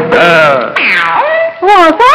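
Film-song vocals: one singer's drawn-out, sliding vocal calls that bend up and down in pitch. The accompaniment thins out partway through, leaving the voice almost alone.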